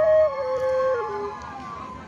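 Side-blown bansuri-style flute holding a note, then stepping down through two lower notes and stopping just over a second in. A fainter sliding tone fades out near the end.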